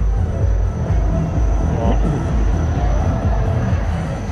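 Loud fairground dance music with heavy bass, playing over the rumbling of the spinning ride's turning platform. A thin steady high whine runs through it.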